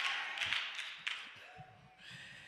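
Faint murmuring and a few scattered claps from a church congregation reacting to the preacher's joke, dying away about halfway through.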